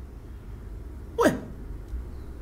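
A single short vocal sound from a man, one quick syllable that falls steeply in pitch about a second in, over a faint low steady hum.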